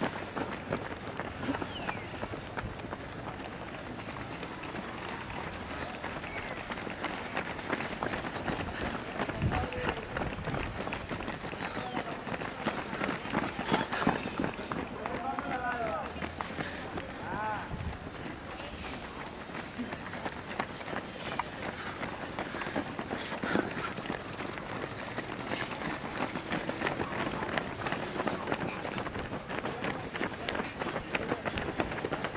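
Many runners' footsteps slapping on asphalt as a pack of half-marathon runners passes, a dense, continuous patter of running shoes, with voices in the background.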